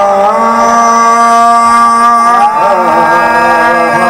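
Qawwali: a male singer holding one long sung note over a steady harmonium drone, his voice bending and wavering in pitch about two and a half seconds in.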